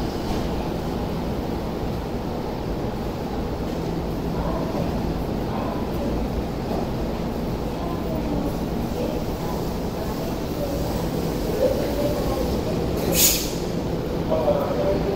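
Steady low hum and rumble of an electric commuter train standing at a station platform, with faint voices of people on the platform. A brief loud hiss about a second before the end.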